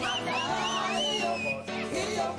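A gospel choir singing an upbeat South African song with band accompaniment. A high sliding sound swoops up and down in short arcs above the voices, with one longer falling glide about a second in.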